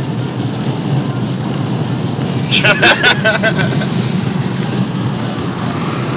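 Steady road and engine noise inside an Audi's cabin at highway speed. A short, loud burst of sound cuts in about two and a half seconds in and lasts about a second.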